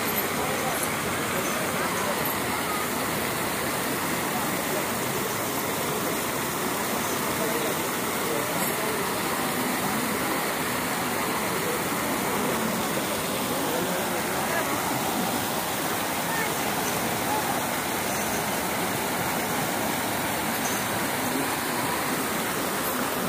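Steady rush of water showering down from an overhead pipe onto an elephant's back and splashing into the muddy ground beneath it, with a crowd chattering.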